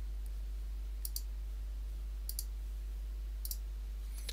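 Computer mouse button clicks, three pairs of short sharp clicks about a second apart, over a steady low hum.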